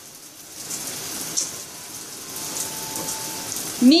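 Water running steadily into a bathtub, a constant hiss.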